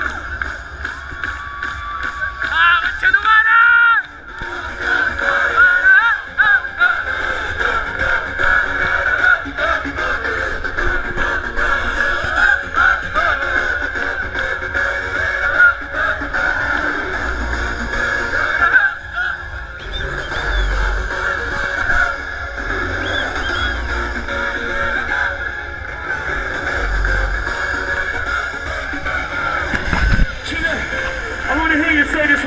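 Electronic dance music played loud through a festival stage's sound system, heard from within the crowd, with deep bass hits in the second half.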